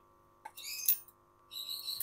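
Faint high-pitched bird chirps in two short bursts, with a soft click just before the first.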